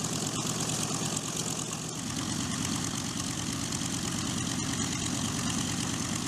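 Radial piston engines of a B-25 Mitchell bomber (Wright R-2600 Twin Cyclones) idling on the ground with propellers turning: a steady, even drone that grows somewhat fuller about two seconds in.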